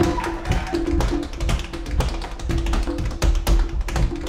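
Tap dancing: rapid, dense taps of tap shoes over a hot jazz band's accompaniment, with a low note sounding again and again underneath.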